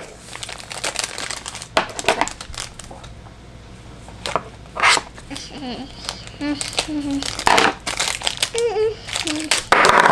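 Small clear plastic wrapper crinkling in irregular sharp crackles as it is handled and snipped open with scissors.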